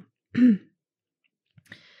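A woman clearing her throat once, a short voiced 'ahem' about half a second in, close to the microphone.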